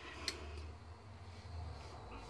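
Black ink stamp pad rubbed directly onto textured, stitched fabric: a soft continuous scuffing over a low rumble, with a sharp click near the start as the pad is handled.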